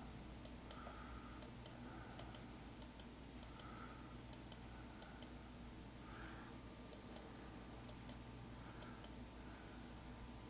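Computer mouse clicking repeatedly on the button that steps an animation forward one frame at a time. Each click is a quick press-and-release double tick, coming about every half to two-thirds of a second, with one short pause past the middle.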